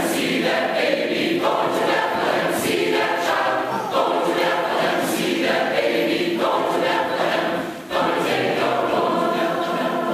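Large mixed choir of men's and women's voices singing a Christmas song together in sustained phrases. There is a brief break for breath about two seconds before the end.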